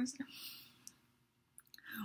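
A woman's speech trails off, followed by a soft breathy exhale and a short hush broken by a few faint clicks, the last of them just before she starts speaking again.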